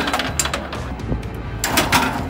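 Background music with a steady bass line, over a few sharp clacks from a foosball table as the ball and the players on the rods strike: near the start, about half a second in, and a cluster near the end.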